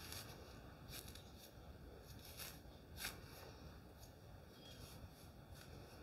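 Near silence with a few faint, short scratchy rustles of a hair pick being dug into curly hair at the roots and lifted, the clearest about three seconds in.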